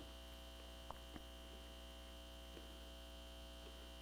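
Near silence: a steady electrical hum, with two faint clicks about a second in.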